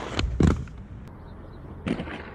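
Aggressive inline skates on a concrete ledge: two hard clacks as the skates strike the ledge, the second the loudest, then a quieter stretch, and another sharp impact near the end as the wheels start rolling on the concrete again.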